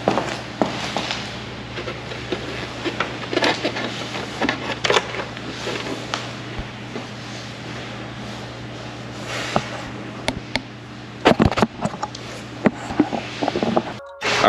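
A motorcycle windscreen being worked loose from its fairing by hand: intermittent plastic scrapes and rustles with scattered sharp clicks, and a cluster of louder clicks a few seconds before the end. A steady low hum runs underneath.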